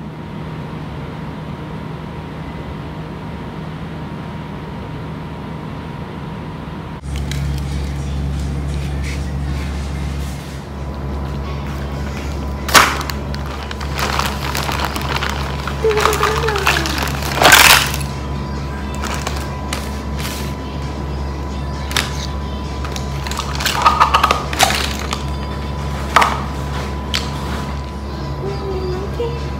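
A clear plastic zip-top bag of makeup crinkling as it is rummaged through, with makeup palettes and compacts clicking as they are set down on a wooden floor, in irregular sharp bursts from about a third of the way in. Steady background music with a low drone plays underneath.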